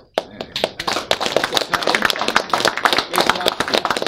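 An audience applauding: dense hand-clapping that starts abruptly and swells within the first second.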